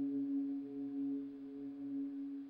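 Minimoog Model D synthesizer playing an FM bell patch: one held, bell-like note with a warble, slowly fading under reverb.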